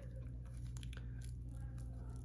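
Faint rustling and small crackles of fingers handling and separating olive marabou feathers, over a steady low hum.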